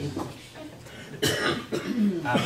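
A person coughing, a sudden burst about a second in.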